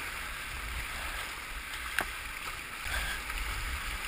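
Whitewater rapids rushing steadily around a kayak, with one sharp knock about two seconds in.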